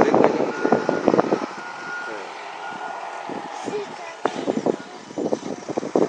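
A vehicle's reversing alarm beeping at a steady high pitch in short, evenly spaced beeps that stop partway through, over the running of a heavy vehicle's engine.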